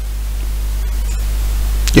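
Steady low hum with a faint hiss, the background noise of the headset microphone's recording, growing slowly louder; a voice starts right at the end.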